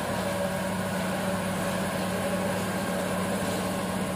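A machine running steadily: an even low hum with one constant tone under it.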